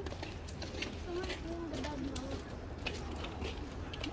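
Quiet outdoor walking sounds: a steady low rumble with scattered light ticks of footsteps on pavement, and a faint distant voice for a moment a second or so in.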